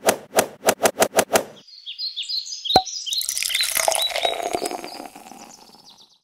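Intro sound effects for an animated title: about eight sharp clicks that speed up over the first second and a half, then a run of short high chirps with one sharp click, then a high shimmering sound that slowly fades out.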